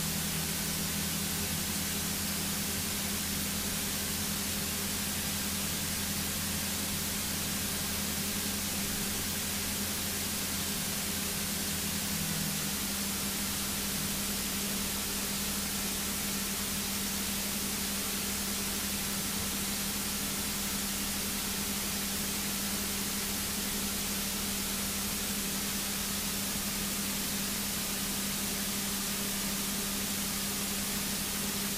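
Single-engine light aircraft's piston engine running at taxi power, a steady hum under a strong even hiss; its pitch steps down slightly about twelve seconds in and again near the end.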